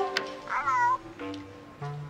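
A short meow-like animal cry about half a second in, its pitch bending up and down, over orchestral film music.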